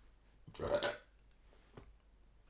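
A man's short burp about half a second in, followed by a faint click near the end.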